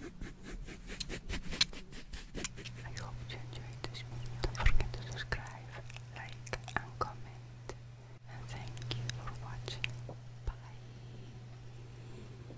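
Soft whispering over scattered light taps and clicks, with a low steady hum coming in a couple of seconds in.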